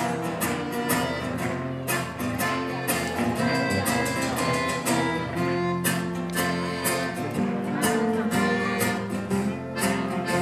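Live band playing an instrumental passage on acoustic guitars and button accordion, with a steady drum beat and cymbal hits.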